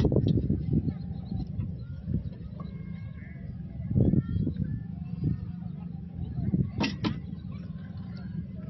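Outdoor ambience by flooded water: a low rumble that fades over about the first second, faint chirps, and two sharp clicks close together near the end.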